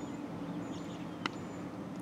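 Low steady hum with a few faint, short high chirps and one soft click just past a second in.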